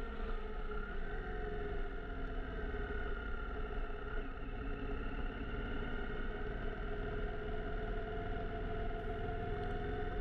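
Yamaha FZ-07 689 cc parallel-twin engine running at a steady riding pace, its pitch rising and falling a little with the throttle. A low wind rumble on the camera mic runs under it.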